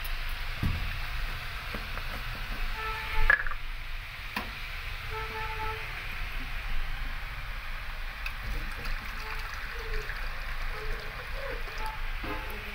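Steady hiss of potato and cauliflower cooking in a steel kadhai on a gas stove, with a sharp clink of metal a little over three seconds in and a lighter one about a second later.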